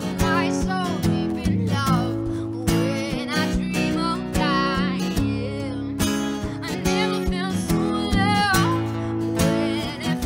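Two acoustic guitars strummed together in a steady rhythm, under a woman's voice singing long, wavering melodic lines.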